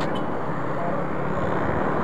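Motorcycle engine running steadily on the move, with wind rushing over the handlebar-mounted camera's microphone.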